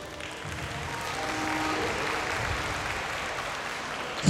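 Audience applauding, growing a little louder over the first two seconds and then holding steady.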